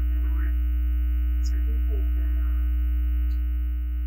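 Steady low electrical mains hum from the meeting's microphone and sound system, the loudest thing throughout, with faint murmured speech in the room.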